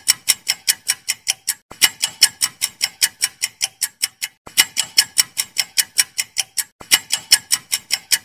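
Clock-ticking sound effect counting down the time to answer a quiz question: quick, even ticks, about five a second, in runs broken by brief pauses every two to three seconds.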